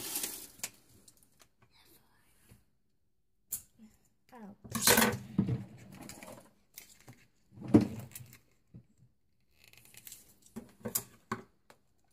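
Plastic toy packaging being worked open with scissors and torn, heard as short, irregular bursts of handling noise with quiet gaps between them.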